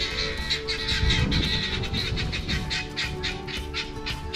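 Background music with held notes over a quick, steady beat.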